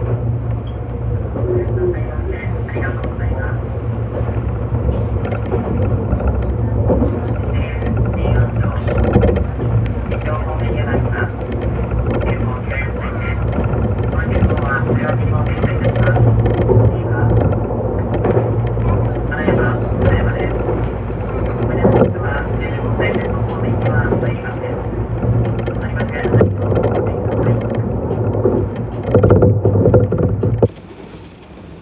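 Meitetsu 6500-series electric train running along the line, heard from the driver's cab: a steady low running hum with wheel and rail noise. A voice speaks over it through most of the stretch.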